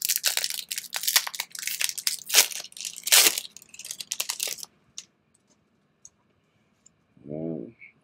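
Foil Pokémon booster pack wrapper being torn open and crinkling as the cards are pulled out of it, a dense crackle that stops after about four and a half seconds.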